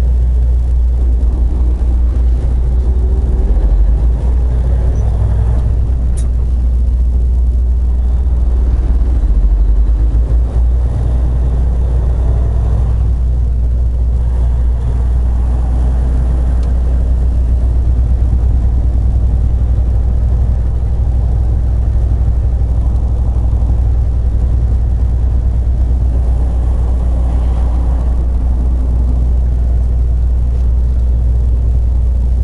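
Semi truck's diesel engine and road noise heard from inside the cab while driving, a steady low rumble that swells slightly a few seconds in and again around ten seconds in. A short click sounds about six seconds in.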